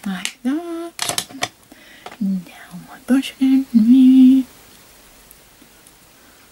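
A woman's voice, murmuring and humming to herself under her breath in short, indistinct phrases with some breathy whispered sounds, ending on a held hummed note about four seconds in.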